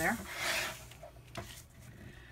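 A sheet of cardstock sliding across a grooved scoring board, a brief rustling slide of about half a second, followed by a single light tap a little over a second in.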